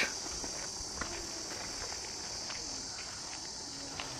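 Steady high-pitched chirring of insects in the surrounding grass and scrub, with faint footsteps on a dirt path.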